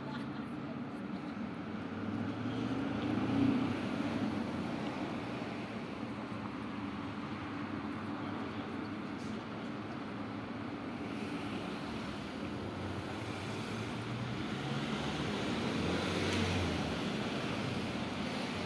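Steady background road-traffic noise, a low rumbling hum that swells a little about three seconds in and again near the end as vehicles pass.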